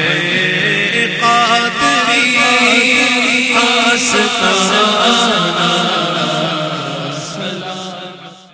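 Naat recitation: a man singing a long, ornamented Urdu devotional line into a microphone over a steady low chanted drone. It fades out near the end.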